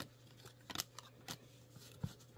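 Faint handling of a stack of baseball trading cards as one card is slid to the back of the stack, with a few light clicks of card stock about three-quarters of a second and a second and a quarter in.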